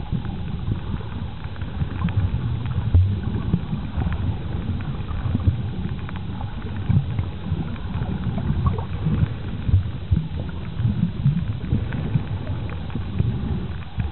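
Muffled underwater sound picked up by a camera in a waterproof housing: an uneven low rumble of moving water with scattered faint clicks and crackles.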